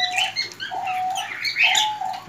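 Birds in an aviary: a dove repeats a short, level coo about once a second, three times, while small birds chirp high above it.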